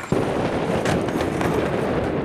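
Steady wind noise buffeting the microphone, with a few faint clicks.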